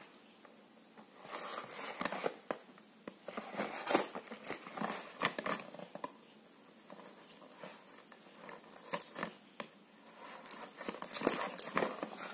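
A cardboard product box and its plastic wrapping being handled and opened by hand: rustling, crinkling, and scattered clicks and taps, coming in bursts with a quieter stretch in the middle.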